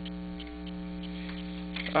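Steady electrical mains hum on the recording: a low buzz made of several steady tones that neither rises nor falls, with a few faint ticks over it.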